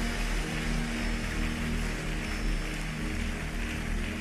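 Large crowd clapping continuously, an even patter of many hands, over soft background music with long held low chords.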